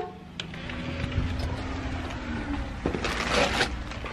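Low rumble of wind on the microphone with rustling from the camera being carried close against a fuzzy coat, and a louder, brief rustle about three seconds in.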